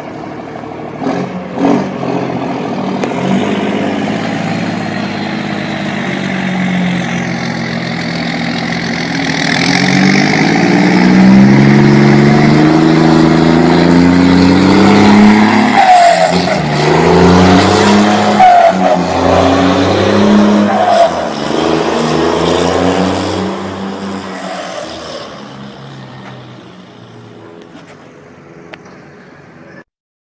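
Heavy diesel truck with a straight-pipe exhaust accelerating hard: the engine note climbs, drops and climbs again through several gear changes, with sharp exhaust cracks at the shifts in the second half. The sound grows steadily louder and then fades as the truck pulls away.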